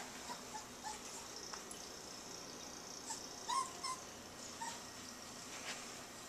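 A small dog whimpering faintly in a few short, high whines, the loudest cluster about three and a half seconds in.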